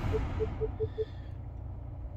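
Five short beeps, all at the same pitch, in about a second: touch-confirmation tones from a 2020 Subaru Outback's touchscreen as the climate-control fan speed is tapped. A steady low hum runs underneath.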